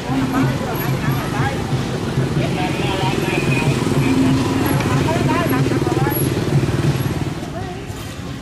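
Motor scooter engine running close by, a steady low hum, with people talking over it. It fades near the end.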